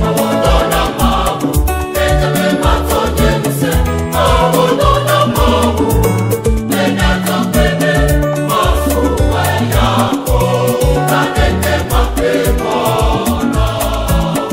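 Ewe gospel song: a choir of voices singing over a band with a steady, driving drum and bass beat.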